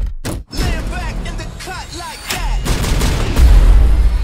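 Action-trailer sound mix: sharp cracks and gunfire with short rising-and-falling whines over music. A heavy bass beat comes in after about two and a half seconds and grows loud near the end.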